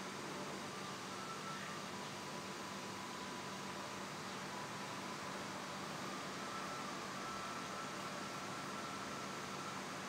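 Steady background room noise: an even hiss with a low hum and faint thin whining tones that come and go, with no distinct events.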